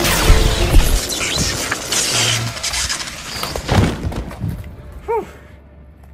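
Sound-effect electric zap and crackle of a fictional taser web firing, loudest at the start and dying away over about two seconds, over action background music. A thud follows a little before four seconds, and a brief vocal sound about five seconds in.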